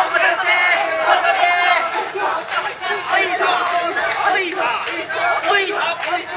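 Mikoshi bearers shouting together as they carry a portable shrine: many voices calling out in repeated loud shouts, one over another.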